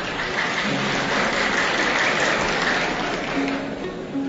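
Concert audience applauding, the applause swelling and then fading near the end, over an Arabic orchestra whose plucked-string notes carry on underneath.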